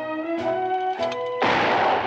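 Brass-led music score playing. About a second and a half in, a loud gunshot blast cuts in over it and lasts about half a second.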